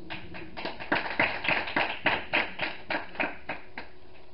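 Hand clapping in a small room, about five or six claps a second, louder in the middle and tapering off near the end.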